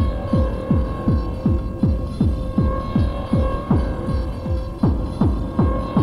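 Electronic music from a cassette tape recording: a kick drum whose pitch drops on every hit, a little over two beats a second, over a steady droning hum.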